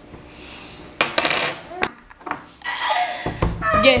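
A spoon clinking against a container about a second in, with a brief ringing, then a second lighter tap. Voices and laughter follow in the second half.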